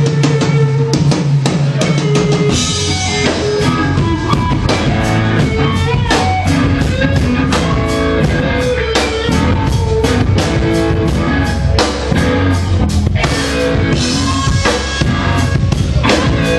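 Live rock band playing an instrumental passage: electric guitars over a full drum kit keeping a steady beat, with no singing.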